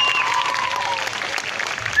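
Audience applauding, a dense patter of many hands clapping. A thin steady high tone sounds over it and fades out about halfway through.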